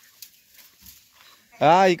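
Quiet outdoor lull with a few faint ticks, then a man's voice loudly calls out "hā" near the end.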